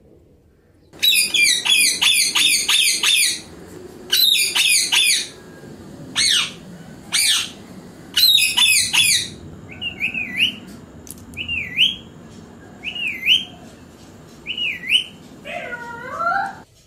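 Ring-necked parakeet calling: several bursts of rapid, harsh squawks repeated many times in quick succession, then single short chirps roughly every second and a half, with a lower call near the end.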